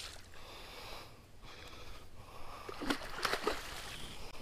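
A hooked fish thrashing and splashing at the water's surface beside a boat, with a few sharp splashes about three seconds in.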